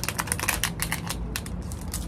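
Crinkly plastic packaging being handled: a rapid, irregular run of small crackles.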